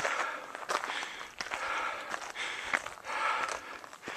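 Footsteps of a hiker climbing old wooden railroad-tie steps on a dirt trail, steady steps about one a second.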